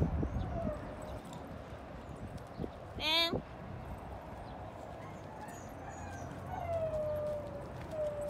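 Two dogs play-wrestling, with one short, loud, high-pitched yelp about three seconds in, and faint thin whining calls near the end.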